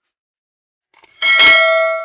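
Stainless steel mixing bowl struck once by a dish a little over a second in, ringing with a bell-like tone that fades over about a second.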